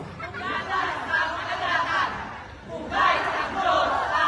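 A crowd of many voices chattering and shouting together, swelling into louder group shouts about three seconds in.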